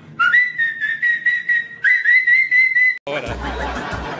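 A person whistling one high, nearly steady note that slides up at the start, breaks briefly and starts again just before two seconds in, and cuts off abruptly at about three seconds.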